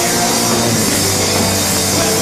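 A rock band playing live: electric guitars, bass guitar and drum kit, steady and loud.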